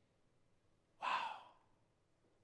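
A man's single audible breath close to a microphone, about a second in, lasting about half a second and fading out.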